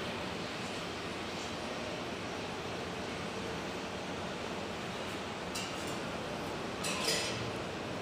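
Steady background hiss of a large kitchen room, with a couple of light clinks about five and a half and seven seconds in.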